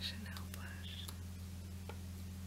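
A soft-spoken word right at the start, then a few faint clicks of a small plastic makeup compact handled in the fingers, over a steady low hum and hiss from the camera's microphone.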